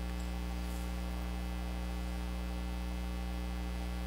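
Steady low electrical mains hum with a stack of evenly spaced overtones, unchanging in level.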